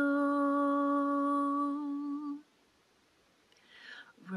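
A woman's unaccompanied voice holding one long, steady sung note for about two and a half seconds. The note stops about halfway through, leaving a pause.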